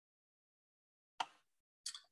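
Near silence, broken about a second in by one short soft click that quickly fades, and near the end by a brief breathy hiss, the kind of mouth and breath noise made just before speaking.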